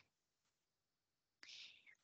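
Near silence, with a faint short intake of breath about a second and a half in, just before speech resumes.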